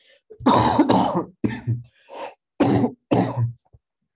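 A man coughing and clearing his throat in a run of about six short bursts, the first two the loudest.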